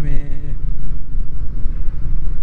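Steady wind rush on the microphone over the low running sound of a Triumph Speed 400 single-cylinder motorcycle cruising in traffic, mostly a low rumble.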